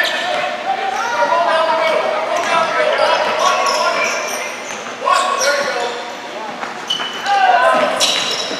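A basketball bouncing on a hardwood gym floor during play, with voices shouting across the court and echoing in a large gym.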